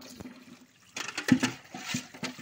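Tap water running into a steel pail as it is rinsed out by hand. About a second in, the water sloshes inside the pail with several sharp knocks and splashes.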